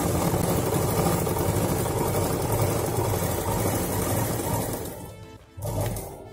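Sewing machine stitching a narrow fabric strip, running steadily, then stopping about five seconds in, with a short burst of stitching just before the end.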